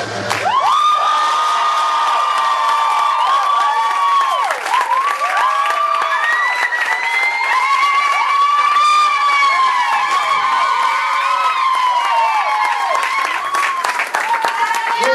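An audience cheering loudly with many overlapping, long high-pitched shouts and whoops, mixed with clapping, starting as the music cuts off in the first moment.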